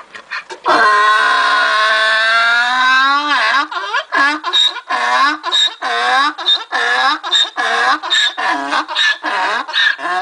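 Donkey braying: one long drawn-out note, then a rapid run of short, repeated hee-haw calls.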